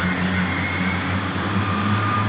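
Heavy mining vehicle's diesel engine idling with a steady low hum and a faint thin whine over it.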